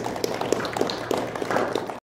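Audience applauding: many irregular hand claps, close together and keeping up throughout.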